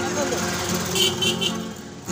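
Steel-string acoustic guitar strummed, with the singer's voice holding on at the end of a line, between verses of a folk song. A short bright burst cuts in about a second in.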